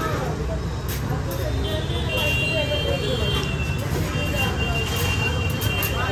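Roadside street ambience: a steady rumble of traffic with people talking in the background. A steady high-pitched tone comes in about two seconds in and holds on.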